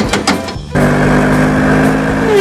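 Tuk-tuk engine sound that starts abruptly about three quarters of a second in and then runs at a steady pitch, after a short burst of clatter.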